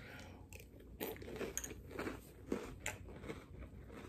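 A person chewing a mouthful of crunchy Cocoa Puffs cereal: soft, irregular crunches, several times over.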